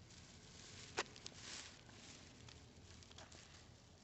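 Near silence with faint handling noise from a phone held against cloth: a sharp click about a second in, a smaller click just after, a brief soft rustle, and a few faint ticks.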